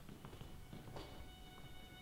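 A faint, high, held violin note enters about a second in, with a few soft knocks before it.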